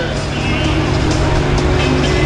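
International Case tractor's diesel engine running steadily at the start line, with music playing over the event's loudspeakers.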